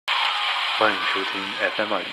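Steady radio-static hiss that starts suddenly and slowly fades, with a man's voice coming through it from about a second in.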